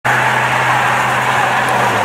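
Steady motor-vehicle noise: a low hum under a rushing hiss, cut off suddenly at the end.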